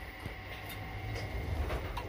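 Passenger lift car travelling between floors: a steady low rumble with a faint, steady high whine.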